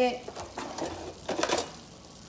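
A metal oven rack being slid out with a baking sheet on it: a few short metallic scrapes and clatters, the loudest about one and a half seconds in.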